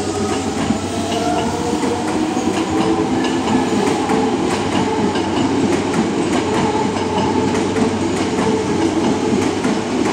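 Toei 5300 series electric train pulling away past the platform. A motor whine rises in pitch through the first second, under a steady rumble of wheels with clattering clicks over rail joints as it gathers speed.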